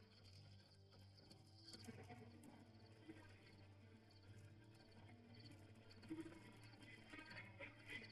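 Near silence: faint quiet ambience with a low steady hum and scattered soft, high-pitched chirps.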